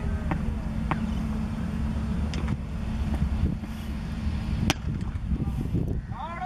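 Outdoor background of a steady low rumble and hum, with faint distant voices and a few sharp knocks, the loudest about two-thirds of the way through.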